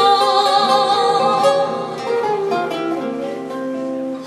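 A woman singing a slow Vietnamese song through a microphone, holding a long note with vibrato about the first second and a half, accompanied by a plucked acoustic guitar.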